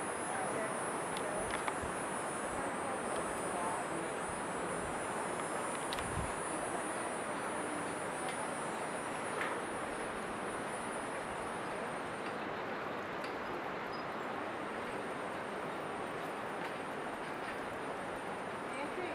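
Rain-forest ambience: a steady high-pitched insect drone over a constant hiss, with a few faint clicks. The insect drone dips about twelve seconds in and returns fainter.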